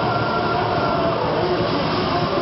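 Thrash metal band playing live: distorted electric guitars, bass and drums in a dense, steady wall of sound, with a few held guitar notes ringing through.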